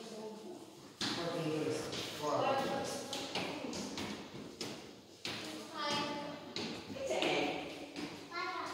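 Indistinct voices of people talking in a large, echoing hall, with a few taps or thumps.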